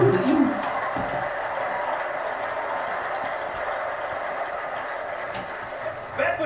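Studio audience applause and laughter after a comedy joke: a steady, even wash that slowly fades.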